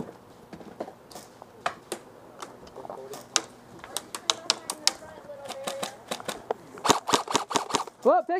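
Airsoft guns firing: irregular sharp clicks and pops, then a quick run of about half a dozen shots near the end.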